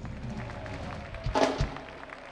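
Live jazz band playing, with keyboards and drums, and a loud percussion hit about one and a half seconds in.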